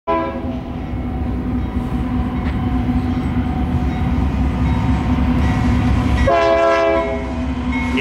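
Southern Pacific diesel locomotives approaching with a steady low rumble that slowly grows louder, sounding a multi-note air horn chord: a brief blast at the very start and a longer, louder one about six seconds in.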